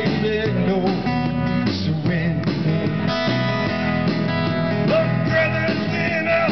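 Live solo rock performance: a solid-body electric guitar strummed steadily through an amplified sound system, with a sung melody wavering over it in places.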